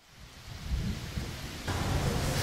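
Rain falling. It fades in from silence and gets louder, stepping up near the end, with a low rumble under the patter.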